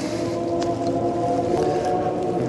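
Slow music of long held chords with no beat, the notes changing about once a second.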